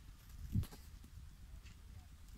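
Low wind rumble on the microphone with one soft thump about half a second in.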